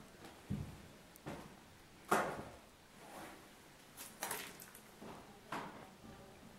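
Irregular footsteps on a debris-strewn floor, roughly one a second, the loudest about two seconds in.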